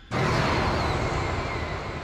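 A sudden loud rushing burst of noise that cuts in just after the start and slowly fades: a cartoon sound-effect hit.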